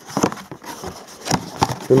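Cardboard packaging being handled as a foil-wrapped firework battery is drawn out of its printed box: rustling cardboard with a few sharp knocks and clicks.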